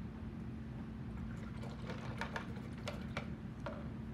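A handful of light clicks and taps as painting tools are handled at a table, bunched in the middle few seconds, over a steady low hum.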